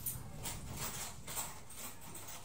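Plastic mailer bag and clothing rustling and crinkling as garments are pulled out and handled, in a quick irregular run of short crackles.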